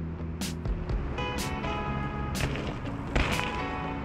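Background music with a steady beat, about one beat a second, over sustained chords.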